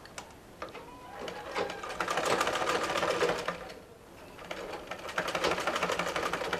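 Black domestic sewing machine stitching a seam through cotton fabric, a rapid, even clatter of stitches. It sews in two runs with a brief stop about four seconds in.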